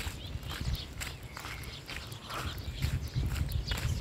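Footsteps of a person walking, with wind rumbling on the phone's microphone and faint rustling of clothing.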